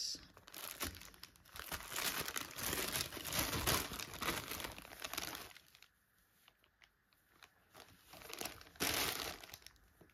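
A clear plastic bag crinkling as it is handled by hand to get fibre out of it. There is a long stretch of crinkling over the first five seconds or so, then a pause, then a shorter burst near the end.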